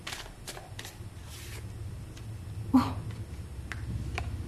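Tarot cards being shuffled and handled, a few short snaps and a soft riffle of card stock, over a steady low room hum. A short, louder sound with some pitch comes near three seconds in.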